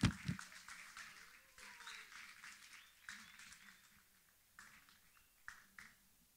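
Audience applause, dense for the first few seconds and then thinning out to a few last scattered claps near the end, with a low thump at the very start.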